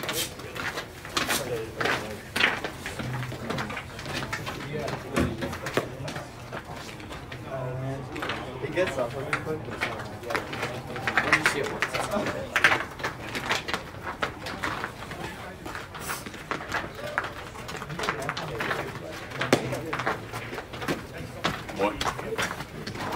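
Indistinct voices of players and spectators around a baseball field, with scattered short knocks and clicks.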